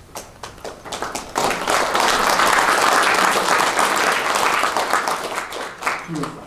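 Audience applauding: a few scattered claps, then steady applause from about a second and a half in, dying away near the end.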